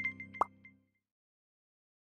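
The end of an electronic intro sound logo: a few short high plinks and a single short pop about half a second in, fading out within the first second, then silence.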